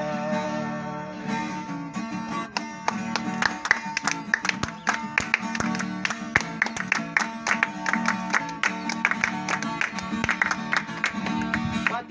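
Viola caipira (Brazilian ten-string folk guitar) played alone in an instrumental break of a moda caipira. Quick rhythmic strumming sits over a steady low bass, and the strokes grow denser and louder about two and a half seconds in.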